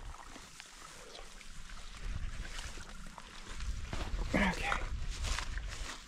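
Footsteps and rustling through long moorland grass, with wind rumbling on the microphone and growing louder from about two seconds in. A short vocal sound comes just past the middle.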